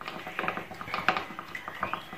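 A thin plastic mixing stick stirring a runny slime mixture in a plastic bowl, with quick irregular clicks and scrapes as it knocks against the bowl's sides; the mixture has not yet thickened into slime.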